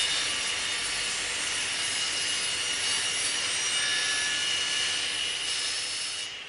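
A steady, loud rushing hiss with a high whistling tone running through it, like a jet engine, starting abruptly and slowly dying away near the end: a logo-reveal sound effect for a particle-shattering animated logo.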